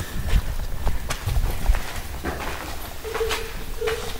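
Footsteps on sandstone and grit, a sharp step about once a second, over low rumbling thumps from a handheld camera microphone being jostled while walking.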